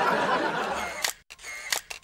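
Laughter over a noisy din that cuts off about a second in, followed by a few sharp camera-shutter clicks.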